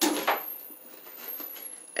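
An empty household product container tossed into a recycling bin. It lands with a sharp clatter right at the start that dies away within about half a second, followed by faint rustling.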